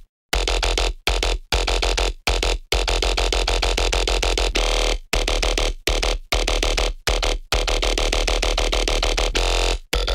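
Distorted dubstep synth bass with a heavy sub, played back from the project in a chopped pattern broken by short silent gaps in a repeating rhythm.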